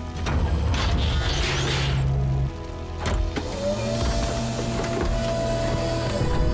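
Cartoon mechanical sound effects, robot servos whirring and clicking, over background music. Near the middle come a few sharp clicks, then a tone rises and holds steady.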